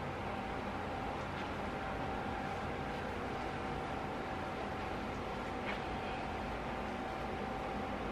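Steady room noise: an even hiss with a faint constant hum.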